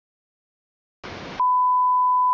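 A brief burst of hiss, then a loud, steady single-pitch beep: the line-up test tone that goes with a TV test card.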